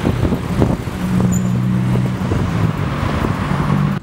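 Cars creeping past close by in stop-and-go traffic, with engines running. From about a second in, a steady low engine hum stands out.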